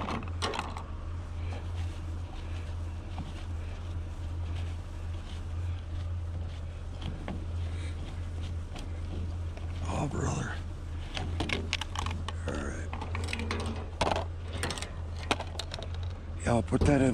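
Plastic clicks and rattles as pedestal fan grilles and fan blades are handled and pulled apart against a car hood, busiest in the last couple of seconds, over a steady low hum.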